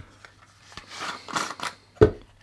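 Hard plastic motor cases being handled on a desk: a handful of light clicks and knocks, ending in a sharper click.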